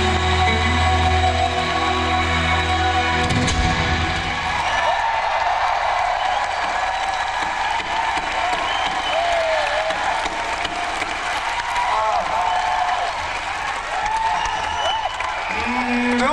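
A live rock band's final chord ringing out over a low held bass note, cutting off about four seconds in; then a large concert crowd cheering and applauding, with many short shrill whistles.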